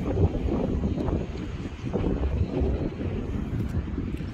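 Wind buffeting the microphone: a low, uneven rumble with no steady tone.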